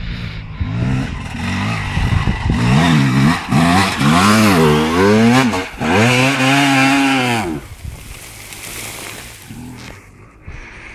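Honda CR250 two-stroke single-cylinder motocross engine revving hard on a steep hill climb, its pitch swinging up and down several times, then held high for over a second before it drops off sharply about three-quarters of the way in.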